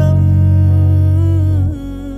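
Electric bass guitar playing along with the song's backing track. A low bass note is held for about a second and a half and then stops, under a sustained vocal note from the recording.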